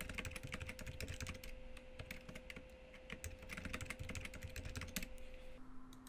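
Typing on a computer keyboard: a quick, uneven run of keystroke clicks as a password and its confirmation are entered.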